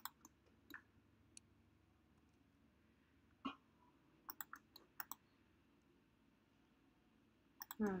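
Scattered, irregular clicks of a computer mouse, about a dozen short sharp clicks in bunches, over near-silent room tone.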